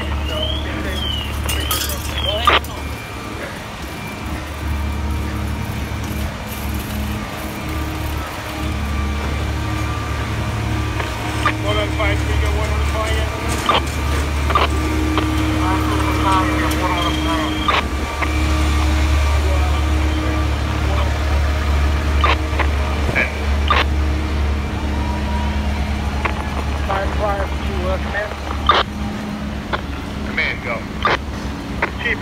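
Idling diesel engines of parked fire apparatus: a steady low rumble that swells for a while in the second half as the trucks are passed, with scattered knocks of street noise. A short warbling electronic tone sounds in the first two seconds.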